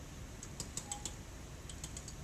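Pen tapping and marking on an interactive whiteboard's surface: a few faint, light clicks, spaced unevenly.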